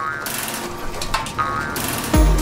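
Metal roller shutter door rattling steadily as it rolls up.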